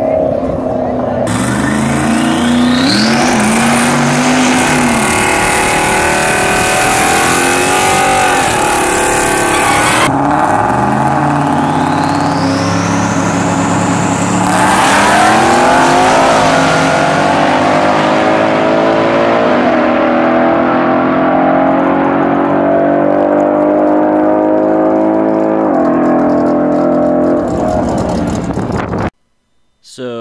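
Whipple-supercharged Ford 5.0 Coyote V8 in a Mustang GT running hard on a drag strip, its supercharger whine rising steeply twice as it pulls through the gears, between stretches of the engine running lower. The sound changes abruptly a few times and cuts out suddenly near the end.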